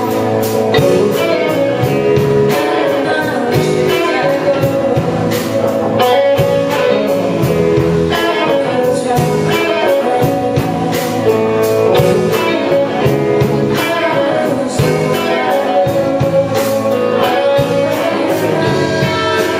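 Live rock band playing: a woman singing over electric guitar, bass guitar, drums and keyboard, with steady drum strikes throughout.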